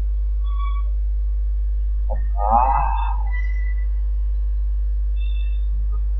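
Steady low drone of ambient relaxation background music, with a few soft, high, sustained tones. A short voice-like gliding sound comes about two and a half seconds in.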